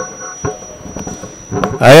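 A short pause in a man's speech into a handheld microphone: faint room noise with a thin steady high whine and a few small clicks, then his voice comes back near the end.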